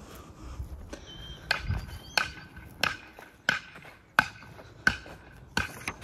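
Footsteps on dry, sparse grass, an even walking pace of about three steps every two seconds, each step a short crunch.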